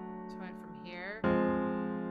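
Digital piano chords: a held chord dies away, then a new chord is struck about a second and a quarter in and rings on, fading. Just before the new chord comes a short wordless vocal sound that rises in pitch.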